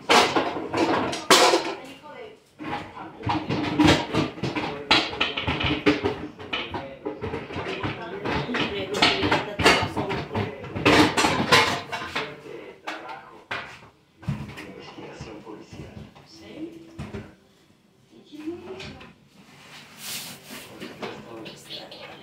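Clatter of pots, dishes and kitchen utensils as a griddle is got out and handled, with talking over it. It grows quieter after about fourteen seconds.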